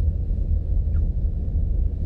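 Steady low rumble inside a car's cabin: engine and road noise while riding in traffic.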